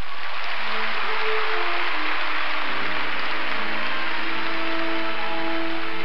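Audience applauding, with slow music of long held notes starting beneath the applause about half a second in.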